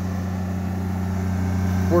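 Honda EB12D diesel generator with its Kubota engine running steadily, a low, even hum.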